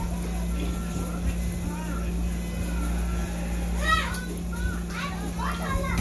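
Indistinct voices speaking away from the microphone, over a steady low electrical hum.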